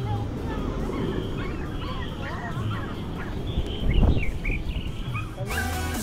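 Outdoor ambience with many short, chirpy calls and a brief low rumble of wind on the microphone about four seconds in; electronic background music starts just before the end.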